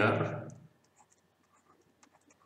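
A man says a short syllable, then faint, scattered light clicks and ticks of a stylus writing on a digital pen tablet.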